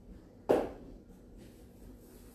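A single knock about half a second in, which fades quickly, then faint handling noises.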